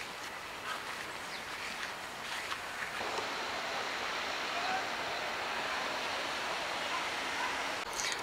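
Steady outdoor background hiss with no clear single source, a little louder from about three seconds in.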